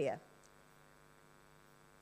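A faint steady electrical hum, like mains hum on an audio line, with a stack of evenly spaced tones, heard in a pause after a woman's word trails off.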